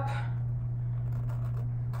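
A steady low hum, with faint gritty scraping from two graham crackers being rubbed past each other on whipped topping.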